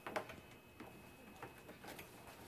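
Faint, scattered light knocks and rustles of a vacuum cleaner's long power cord being handled and draped over its upright handle, about five small clicks over two seconds.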